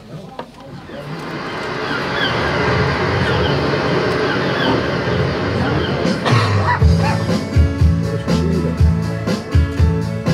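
Instrumental intro music that swells up over the first couple of seconds, then a bass line and a steady beat come in about six seconds in.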